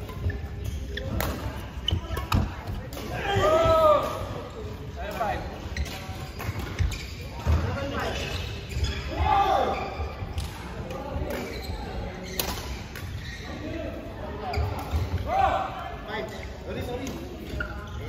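Badminton play on an indoor court: sharp racket strikes on the shuttlecock and sneakers squeaking on the court floor, with voices in the background.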